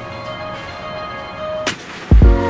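Background music of held chords, broken about one and a half seconds in by a sudden sharp hit.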